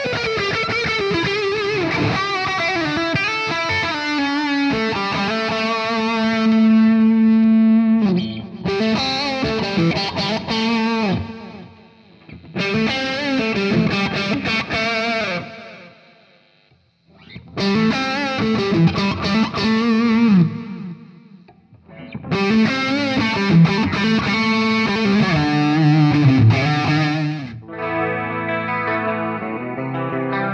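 Ibanez S540FM electric guitar played through an overdriven lead tone: sustained, bent notes with wide vibrato in phrases broken by brief pauses. Near the end it switches to quicker, denser notes.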